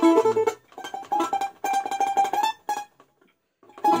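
Balalaika strummed with the fingers rather than a plectrum, in rapid repeated strokes over ringing notes. Two short phrases are separated by a brief break, and the playing stops about three seconds in.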